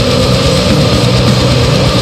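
Extreme metal band recording: heavily distorted, down-tuned guitars and bass holding a low sustained riff over fast, dense drumming, loud and steady, with no vocals.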